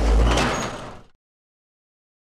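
Logo-sting sound effect: a deep boom with a noisy rush on top, dying away over about a second and then cutting to silence.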